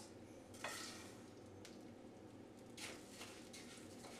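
Oil sizzling faintly in a nonstick frying pan, heated with garlic for toasting rice, with two brief rustles about half a second and near three seconds in as a wooden spoon stirs.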